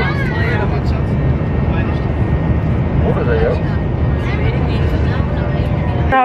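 Steady low rumble of airliner cabin noise heard from a passenger seat, with faint voices over it.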